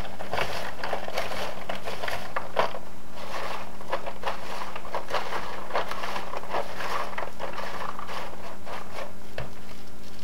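Popcorn being tossed and mixed by a gloved hand in a disposable aluminium foil pan: continuous irregular rustling and scraping of popcorn against the foil.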